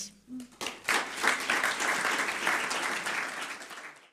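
Audience applauding. The clapping starts about half a second in and fades away near the end.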